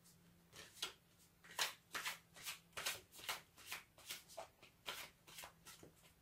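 A deck of tarot cards being shuffled by hand: a run of soft, irregular card slaps and snaps, roughly three a second, starting about half a second in.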